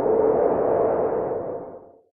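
Transition sound effect under a segment title card: an electronic swell with a steady humming tone inside a soft whoosh, fading out near the end.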